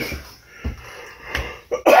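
Laughter dying away in two short, hiccup-like bursts about a second apart, then a cough near the end.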